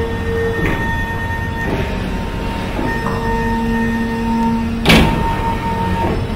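Cinematic title-card sound effects: a steady low drone with held synth tones, a few swishes, and a loud boom about five seconds in.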